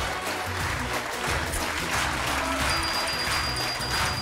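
Studio audience applauding over upbeat game-show music with a steady bass beat, greeting a prize win; a high held note joins the music in the second half.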